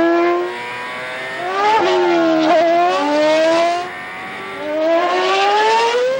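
Mercedes Formula One car's 2.4-litre V8 engine at high revs, its pitch climbing and dropping sharply twice as it shifts up through the gears while the car passes at speed.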